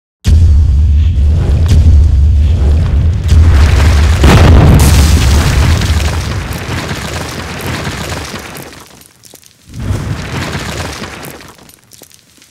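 Cinematic logo-reveal sound effect with music: a sudden deep boom just after the start, then a heavy low rumble of a stone wall crumbling, swelling again about four seconds in and slowly dying away. A second hit comes near the end and fades out.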